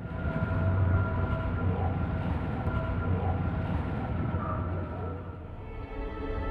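Documentary title-sequence sound design: a deep, steady rumble with a few sustained tones held above it. It eases slightly near the end.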